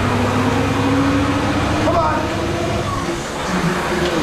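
Concept2 indoor rower's fan flywheel whirring steadily under hard rowing at about 34 strokes a minute. A man shouts "come on" about two seconds in.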